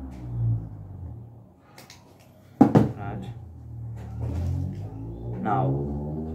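Quiet handling noise over a steady low hum, with one sharp knock about two and a half seconds in. A man's voice comes in near the end.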